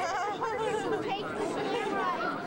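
People chattering, several voices overlapping with no clear words.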